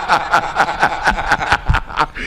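Men laughing hard at a punchline, in rapid repeated bursts of laughter.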